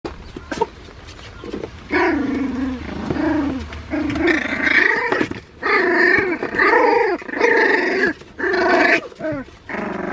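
Shiba Inu puppies about 25 days old growling as they play-fight: a string of high-pitched growls of half a second to a second each, with short pauses between them, starting about two seconds in.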